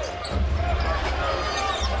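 Basketball arena game sound: a steady crowd hubbub with a ball being dribbled on the hardwood court.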